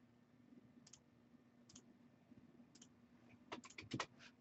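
Faint, scattered computer clicks: single clicks about one, two and three seconds in, then a quick run of several clicks near the end, over near silence.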